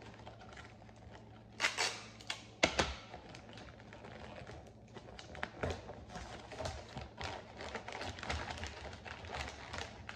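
Christmas wrapping paper being folded and pressed around a cardboard can, crinkling and rustling. There are a few sharp crackles about two seconds in and a run of small clicks and rustles in the second half.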